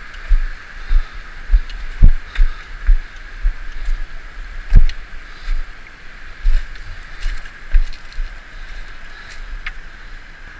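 Steady rush of a fast river, overlaid by irregular heavy thumps and knocks from footsteps and body-worn camera bumps as someone clambers down over rocks. The loudest bumps come about two seconds in and just under five seconds in.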